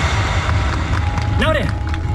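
The end of the yosakoi dance music dies away, leaving a steady low rumble. About a second and a half in comes one short shouted call from a voice, its pitch rising and then falling.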